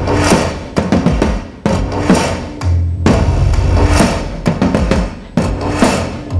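Live electronic dance music with sharp, loud drum hits struck with sticks on a row of large stage drums, in a repeating pattern over a deep bass line.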